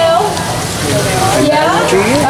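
Funnel cake batter frying in a deep fryer of hot oil: a steady sizzle, with voices over it.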